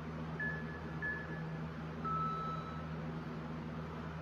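Workout interval timer beeping: two short high beeps, then a longer, lower beep about two seconds in, the signal that the next work interval starts. A steady fan hum runs underneath.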